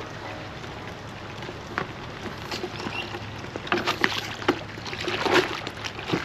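Pressure washer wand jetting water into a bucket of soapy water, churning and sloshing the suds, with louder splashes around four and five seconds in. A steady low hum runs underneath.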